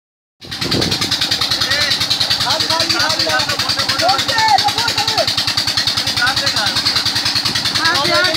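An engine running steadily with a fast, even beat, starting about half a second in, over the hiss of splashing and gushing water, with children's shouts and calls.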